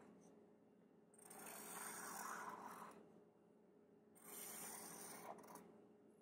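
Felt-tip permanent marker drawing two long lines on construction paper, each stroke a faint scratchy rasp lasting about a second and a half. One comes about a second in and the other near the end.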